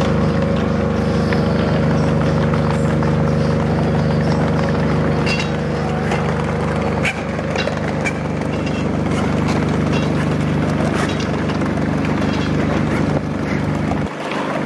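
A steady low mechanical hum with light clicks and taps scattered over it.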